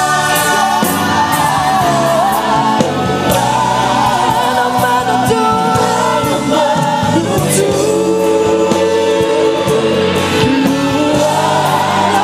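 Gospel worship music: a choir of voices singing a continuous, steady-level song over instrumental accompaniment.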